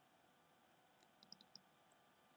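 Near silence with a few faint computer-mouse clicks, a quick pair about a second and a half in.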